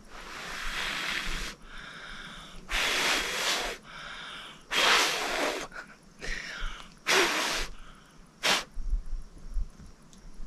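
A person blowing hard on a fluffy seed head to scatter the seeds: five loud puffs of breath, the first and longest about a second and a half, the last a short quick one, with softer breaths between.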